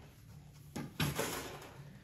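A wooden-handled peavey being set down and leaned against a wall: a sharp click and then a louder knock a quarter second later, about a second in.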